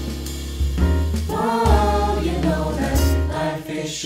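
Vocal jazz ensemble singing in close harmony over upright bass notes, with the jazz band accompanying. The voices come in about a second and a half in, and the bass drops out near the end.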